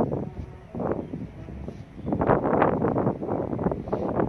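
Wind buffeting a phone's microphone in irregular gusts, strongest in the second half.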